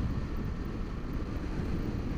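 Honda Varadero 1000 V-twin motorcycle cruising at a steady speed, its engine mixed with steady wind rush on the helmet-mounted microphone.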